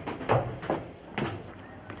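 Footsteps climbing a stairwell: four or five heavy steps about half a second apart, with some echo.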